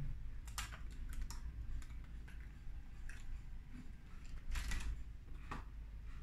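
A clear plastic lure package being opened by hand: scattered clicks and crinkles of the stiff plastic, with a louder crackle about four and a half seconds in.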